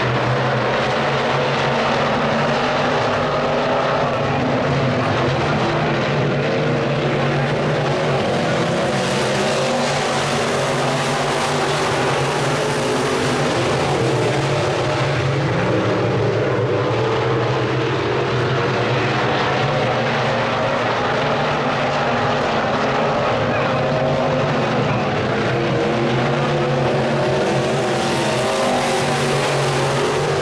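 A field of Sport Mod dirt-track race cars running at racing speed, their V8 engines blending into a loud, steady drone. It swells as the pack passes close, around ten seconds in and again near the end.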